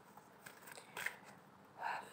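Tarot cards being shuffled by hand: faint rustling of the deck with a couple of short clicks of card edges about halfway through.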